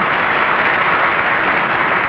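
Studio audience laughing and applauding, a steady wash of noise with no voice over it.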